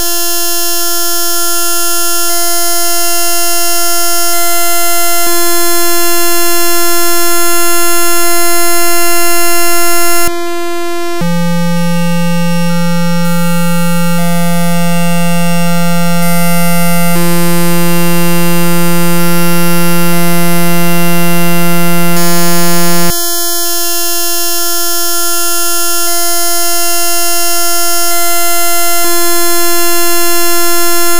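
A one-line symphony, a bytebeat-style C one-liner synthesized live in ChucK: a loud, buzzy stack of sustained electronic tones. The pitch pattern changes abruptly twice, about every 11 to 12 seconds, and each section grows slowly louder.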